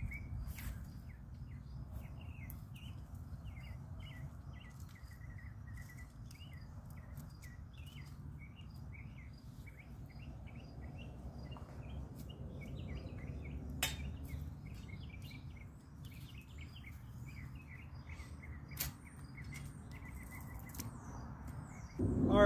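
Small birds chirping repeatedly over a steady low rumble. Two sharp clicks stand out, one a little past the middle and another about five seconds later.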